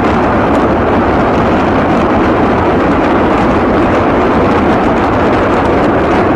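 Loud, steady rushing noise from battle footage, with no distinct shots or blasts and no change in level throughout.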